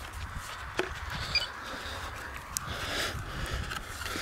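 A few faint clicks from a LiPo battery and its lead being handled close to the microphone, over a low rumble of wind on the microphone.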